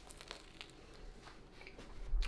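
Faint crinkling and small crunches as a bite is taken from a toasted hoagie roll cheesesteak and chewed, with a few soft clicks and a slight rise near the end.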